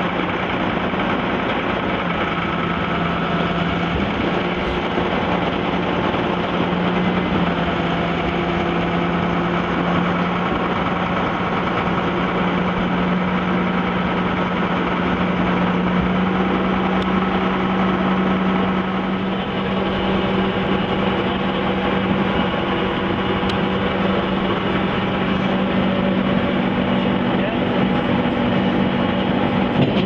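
River ferry's engine running steadily while under way, a constant low hum with no change in speed.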